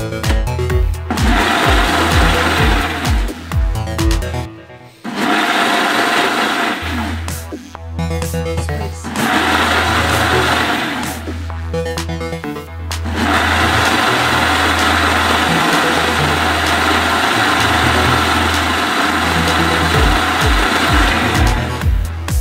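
Ninja Auto-iQ blender running a pulse program on a milkshake: the motor and blades run for a few seconds, stop briefly and start again several times, then run without a break for the last nine seconds or so. A steady electronic music beat plays underneath.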